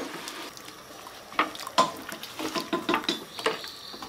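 Pot of boiling water bubbling as strips of sour bamboo shoot are tipped in off a plate and stirred with wooden chopsticks, with several light knocks of the chopsticks and plate against the pot.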